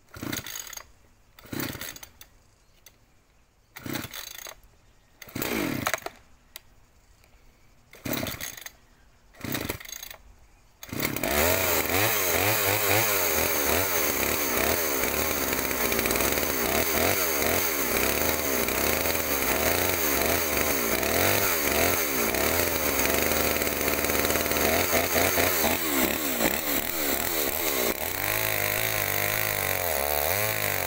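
Baumr-Ag SX72 72cc two-stroke chainsaw being pull-started: about six short bursts as the cord is pulled before the engine catches about eleven seconds in and runs steadily, revving. Near the end it drops in pitch and wavers as the chain goes into the log under load. The owner says the saw needed a tune-up, its carburettor clogged with sawdust through a poor air filter.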